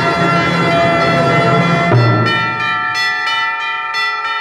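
Symphony orchestra playing, from a 1958 recording. In the first half the full orchestra plays with heavy low notes; about halfway the low instruments drop out, leaving high held tones ringing on.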